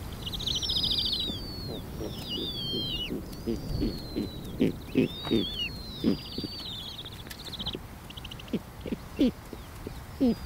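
Snowy owl calls: short, low hoots in uneven clusters starting a few seconds in and growing louder. Over them, in the first part, come high, thin descending whistled calls and rapid trills of other birds.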